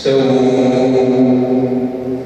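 A man's voice chanting Islamic prayer, starting suddenly on one long held note that keeps a nearly steady pitch.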